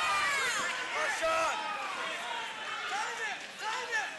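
Spectators and cornermen shouting over one another, several loud yells rising and falling in pitch, with a single dull thump about a second in.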